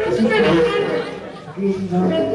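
A voice breaks in over a live no-wave band, with wavering, uneven pitch, then a held wind-instrument note comes in near the end.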